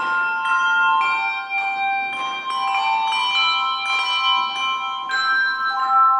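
Handbell choir playing a slow piece: handbells struck in overlapping notes and chords every half second or so, each left ringing on.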